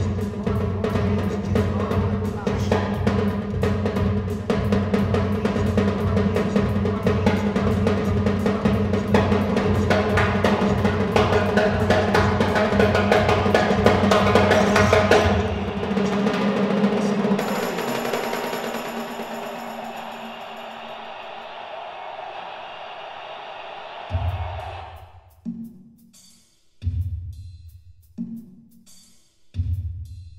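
Drums of a solo multi-percussion setup played in a fast, dense run of strokes, with a steady low drone underneath, for about fifteen seconds. The playing stops and a lingering sound fades away, then a few separate loud drum hits come near the end.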